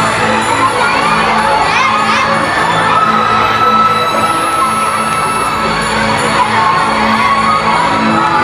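Recorded music for a dance, with many children shouting and cheering over it.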